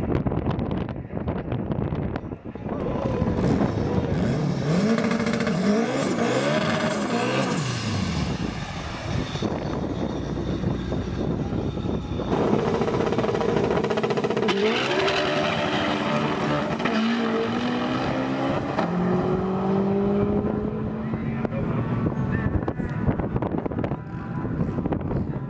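Turbocharged Honda Civic drag-car four-cylinder engines at full throttle, revving up in a series of rising pitch sweeps as they shift through the gears. About halfway in, an engine is held at a steady high pitch during a burnout, with a hiss of spinning tyres.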